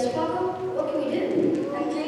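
Children's voices speaking.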